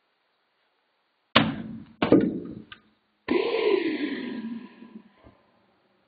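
Edited-in sound effects: two sharp thuds a little over a second apart, then a longer effect of about two seconds whose pitch dips and rises before it fades.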